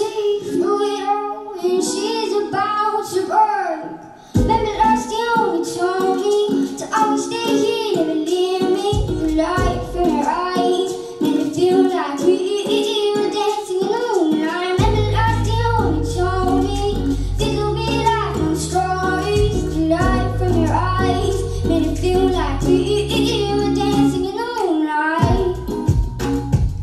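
A girl singing a song into a handheld microphone over a backing track. A deep bass part comes in about four seconds in and fills out around the middle.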